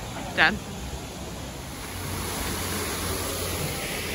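Outdoor street ambience: a steady rushing noise with a low hum under it, which swells about halfway through.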